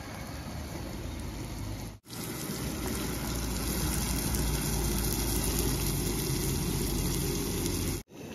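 Onions and tomatoes frying in oil in a pot on a portable butane camp stove: a steady sizzle that breaks off for a moment about two seconds in and comes back louder.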